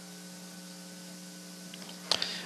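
Steady electrical hum over background hiss: a low, even buzzing tone with faint overtones.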